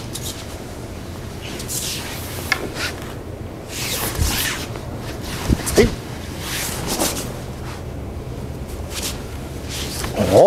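Bare feet shuffling on the dojo mat and practice uniforms rustling as two people move through a jo-versus-wooden-sword kata, heard as scattered soft swishes over a steady low room hum.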